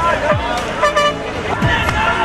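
Procession din of voices and music, with a short horn toot about a second in.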